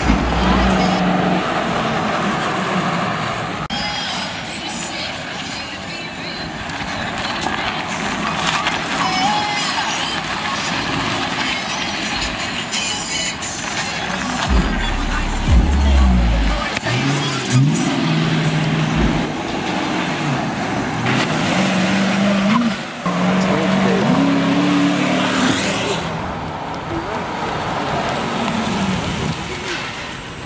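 Music with vocals mixed with a Dodge Charger R/T's HEMI V8 engine driving, revving several times in the second half.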